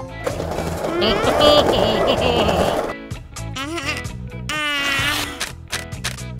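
Cartoon soundtrack: background music runs under a noisy rushing sound effect for about the first three seconds. Then come squeaky, wordless cartoon-character vocalizations.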